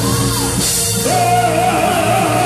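A man singing long held notes into a microphone over amplified church music with a steady low accompaniment. The sung note drops away about half a second in, and a new held note starts just after a second in.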